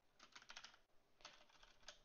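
Faint computer keyboard typing: a few short runs of keystrokes, about a third of a second in, just after a second, and near the end.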